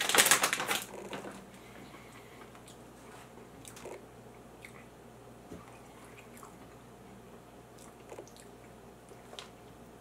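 Snack bag rustling for about a second as a hand reaches in, then quiet chewing of a peanut butter filled pretzel, with a few faint scattered crunches.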